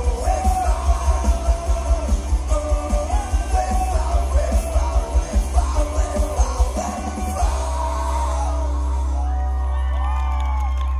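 Live rock band with electric guitars, bass and drums playing over a steady pounding beat while a singer's voice rises and falls above it. About seven seconds in the drumming stops and a final chord is left ringing as the song ends.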